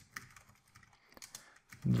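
Computer keyboard being typed on: a run of irregular key clicks, sparser in the second half.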